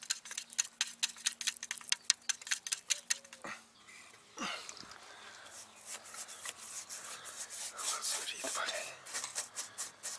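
A wooden stick stirring acrylic paint in a metal tin, tapping rapidly against the can for the first few seconds. Then a paintbrush is drawn back and forth over the hive's wooden boards with an uneven scratchy swish.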